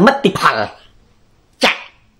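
A man talking over a video call for the first half second or so, then a pause broken by one short, sharp sound about one and a half seconds in.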